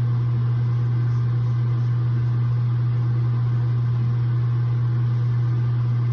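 Bathroom ceiling exhaust fan running with a steady, loud low hum.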